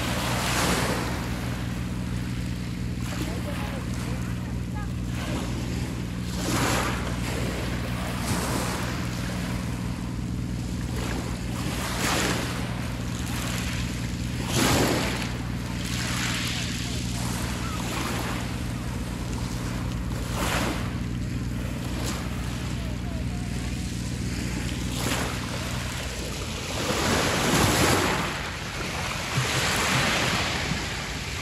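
Small waves breaking and washing up a pebble beach, one swell every couple of seconds, with a bigger wave crashing near the end. Underneath runs a steady low hum that stops a few seconds before the end.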